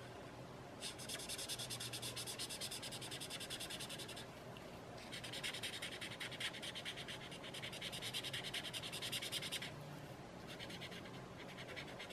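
Sakura brush pen scrubbing quickly back and forth on sketch paper as it fills in a solid black area, in three runs of rapid strokes with short pauses between.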